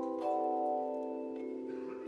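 Handbell ensemble ringing handchimes, several pitched notes sounding together as a chord. A new chord is struck about a quarter second in, and its notes ring on and slowly fade.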